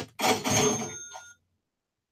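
Computer alert sound effect: a clattering chime with high metallic ringing, like a cash register, fading out about a second and a half in. It plays as the crude-oil futures trade reaches its profit target.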